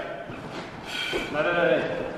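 Speech only: a man calling out "dai" in encouragement about a second in, after a quieter moment.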